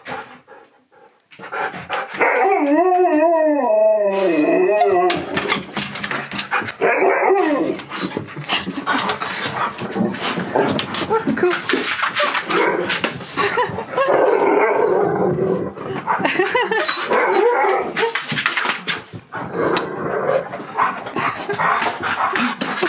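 Husky-malamute vocalising excitedly: a long wavering howl about two seconds in, then a run of yips, woo-woos and barks. From about six seconds in it is mixed with many sharp clicks and knocks.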